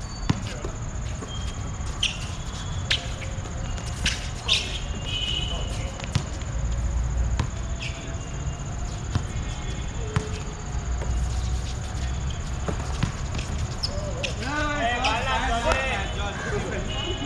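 A basketball bouncing on an outdoor hard court, heard as scattered sharp thuds, with short high squeaks of sneakers. Players' voices call out near the end.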